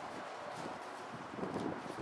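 Wind noise on the microphone: a steady rushing hiss.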